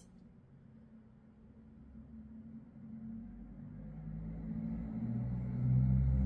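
Low engine rumble of a motor vehicle drawing nearer, growing steadily louder from about a second and a half in.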